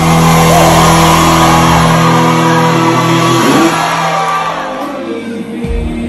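Live band holding a sustained chord while a large crowd cheers and shouts loudly. The cheering dies down after about four seconds.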